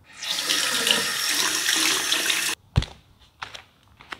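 Water running hard from a single-lever bathroom mixer tap into a sink, stopping abruptly about two and a half seconds in. Then a sharp thump and a couple of fainter knocks.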